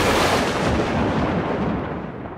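A dramatic boom sound effect like an explosion or thunderclap: a sudden blast that rumbles and dies away over about two seconds.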